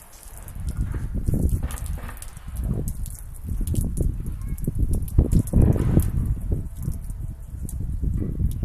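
Low, gusting rumble on the microphone that rises and falls irregularly, with a few faint clicks.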